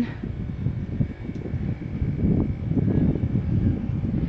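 Low, uneven rumble of wind buffeting a phone microphone outdoors.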